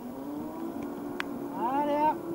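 A steady low machine hum, with a sharp click just after a second in. Near the end comes a long, rising shouted call.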